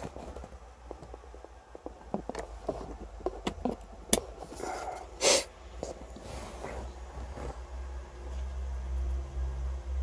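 Scattered light clicks and knocks of plastic car-interior trim and a wiring connector being handled, over a low steady hum, with one short breathy, sniff-like noise about five seconds in.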